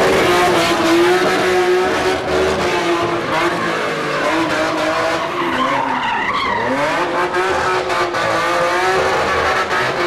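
A car drifting: its engine held at high revs while the tyres squeal in a steady, high whine, with the pitch sagging and climbing back about six seconds in.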